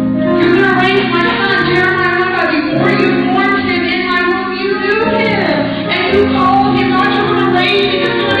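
A woman singing over instrumental accompaniment, with long held notes and music throughout.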